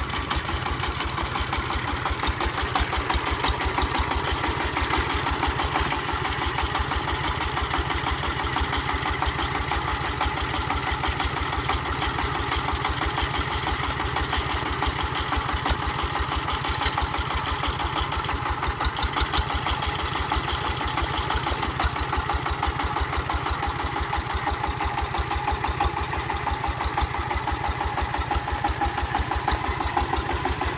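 Single-cylinder diesel engine of a two-axle công nông farm vehicle running steadily with an even chugging beat as the vehicle crawls through deep mud.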